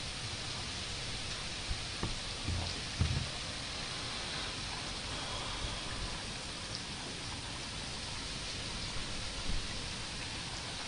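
Steady rain falling during a thunderstorm, an even hiss. A couple of brief low thumps come about two and a half and three seconds in.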